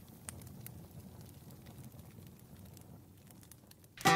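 Campfire crackling faintly: a low rumble with scattered sharp pops.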